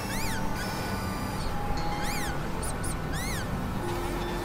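Experimental electronic noise-drone music from synthesizers: a dense, noisy bed with held tones, over which short chirps rise and fall in pitch three times, with a few short high blips between them.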